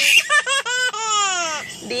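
Baby laughing: a few quick bursts of giggles, then one long high-pitched squeal of laughter that falls in pitch.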